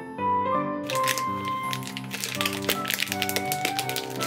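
Background music throughout. From about a second in, a plastic food package crinkles and crackles in a quick run of small clicks as a block of bacon in its wrapper is handled.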